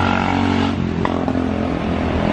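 A motor vehicle's engine running steadily close by in the street, with a brief click about a second in.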